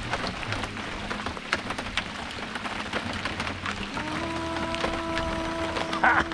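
Heavy rain shower falling on and around a small canoe: a steady patter, dense with small drop ticks. About two-thirds of the way through, a steady held note with overtones joins in.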